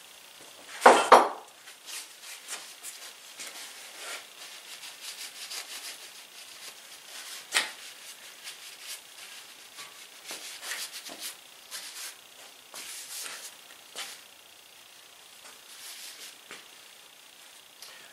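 Metal clinks and taps at the flywheel hub of a 1920 International Type M engine as a gib key is fitted and its gap set by hand: two sharp knocks about a second in, one sharp click near the middle, and scattered light clinks and rubbing between. The engine is not running.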